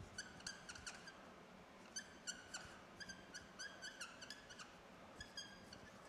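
Dry-erase marker writing on a whiteboard: quiet, short, high squeaks in quick clusters, one per stroke, with brief pauses between words.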